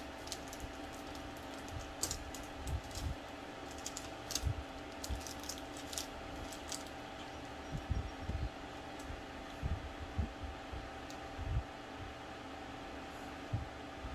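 Light, irregular clicks and taps from fingers peeling and pressing stick-on emblem letters onto a car hood, with a few soft low thumps. A steady hum runs underneath.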